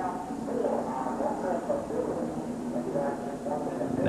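Steady background noise of race-track broadcast audio, with faint, indistinct voices underneath.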